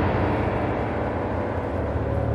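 A low, steady rumbling drone from the film's sound design, easing a little in level.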